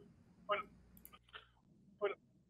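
A pause in conversation: a short, faint voice sound about half a second in and a fainter one about a second and a half in, with a small click between them.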